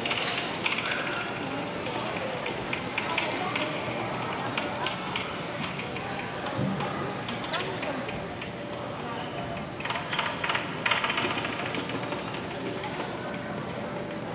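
Indistinct crowd chatter echoing in a large hall, with bursts of sharp clicks in the first few seconds and again about ten seconds in.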